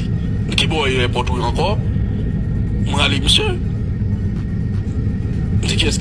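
A voice speaking in three short phrases, with long pauses, over a steady, loud low rumble that never lets up.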